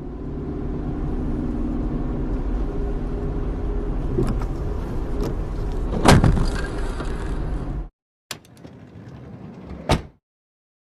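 A car driving on a wet road, heard from inside the cabin: steady engine hum and tyre noise, with a single loud bang about six seconds in, the loudest sound. The sound cuts out near eight seconds, then comes back quieter with a few clicks and a sharp crack at the very end.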